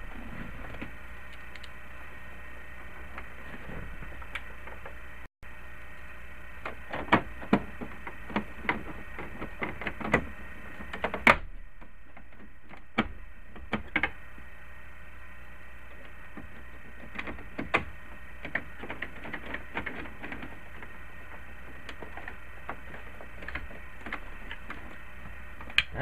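Plastic dashboard trim of a Jeep Cherokee XJ being handled and pressed back into place: scattered clicks and knocks, busiest in the middle of the stretch, over a steady background hiss and hum.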